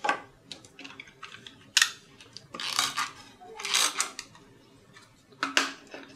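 Folded cardstock cards handled on a cutting mat: a few sharp taps and short rustling swishes of paper sliding and being pressed down.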